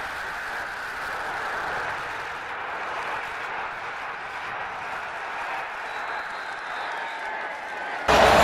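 Steady noise of a large stadium crowd, an even wash of cheering and chatter.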